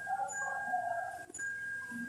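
Faint background sound in a pause: a thin, steady high whine that breaks off twice, a faint wavering sound beneath it in the first half, and a single click a little past halfway.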